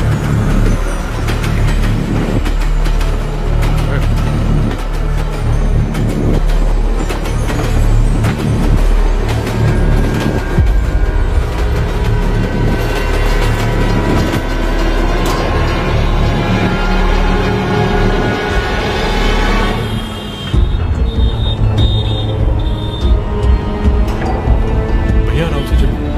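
Tense film background score, loud and continuous, with a train running past a level crossing mixed underneath. Near the end the music changes to a heavier low pulse.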